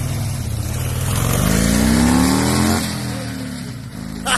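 Motor trike's engine accelerating hard, its note rising for over a second, then fading as the trike pulls away.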